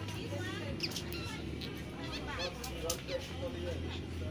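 Indistinct voices of people talking, over a steady low hum.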